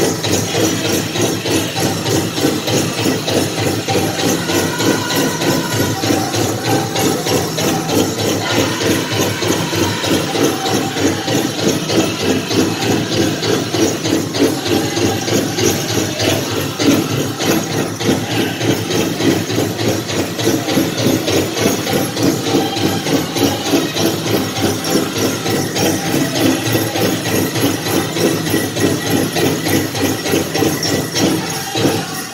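Powwow drum group singing a chicken dance song, voices over a steady, fast beat on a big drum.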